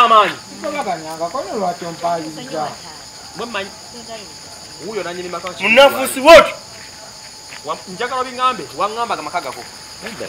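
A steady, high chorus of crickets on a night outdoors, heard under people's voices talking on and off, with a louder vocal outburst about six seconds in.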